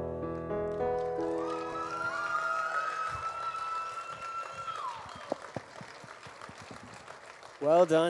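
Closing chords of a song's backing track ringing out and fading while a girl holds a long last sung note, which drops away about five seconds in. A few faint clicks follow in the near-quiet hall. A man's voice starts near the end.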